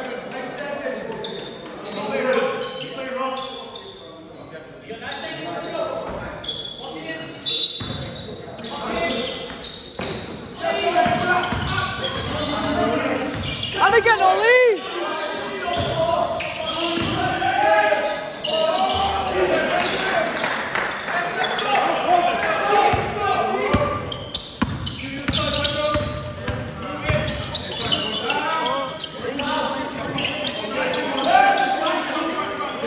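Basketball bouncing and players' indistinct shouts during a game, echoing in a large sports hall, with a loud, brief squeak about halfway through.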